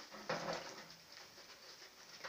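Warthogs feeding at close range: a short burst of snuffling, rooting noise about a third of a second in, then fainter scattered sounds.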